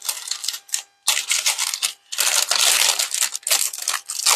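Glossy wrapping paper crinkling as it is unfolded from a small package, in three stretches with short pauses about one and two seconds in.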